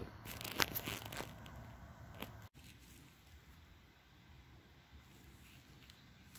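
Faint crunching and scraping of a knife trimming rough plastic burrs off a car battery's cut case, with a few sharp clicks in the first two seconds. It breaks off suddenly, and near silence follows.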